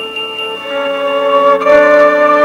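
Background music: sustained keyboard notes held as steady chords, moving to new notes about half a second in and again near the end.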